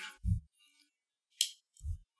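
A single sharp click from the action of a Denix replica Webley Mark IV revolver as it is handled and its trigger is worked, about a second and a half in, with two brief low bumps before and after it.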